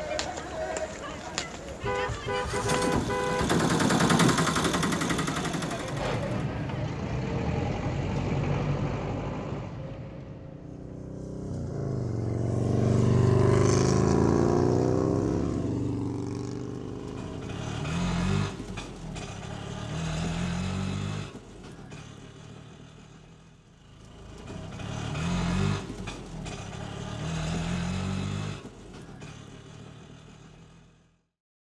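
Street noise with a motor vehicle passing, its sound swelling and falling away about eleven to sixteen seconds in; short voiced sounds come and go near the end.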